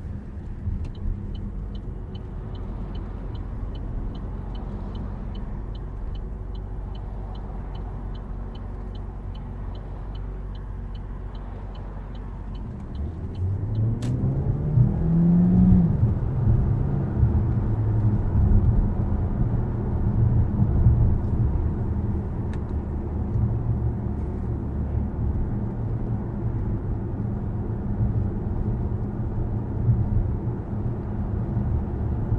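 Inside the cabin of a 2023 Opel Grandland GSe plug-in hybrid: a quiet low hum with the turn indicator ticking at about three a second. About 13 s in the petrol engine comes in, with a click and a sound rising in pitch as the car accelerates hard. A louder steady drone of engine and road noise follows at motorway speed.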